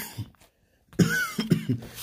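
A man coughing, twice, about a second apart, the second cough longer.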